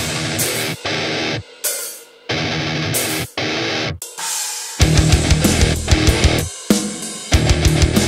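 Thrash metal band playing an instrumental passage with distorted guitars and drums. It starts as stop-start riffing broken by short gaps, then the full band comes back in, playing on continuously, from about five seconds in.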